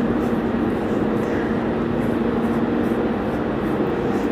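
Steady, even background hum with a constant low drone tone, like a running fan or similar machine, and no sudden events.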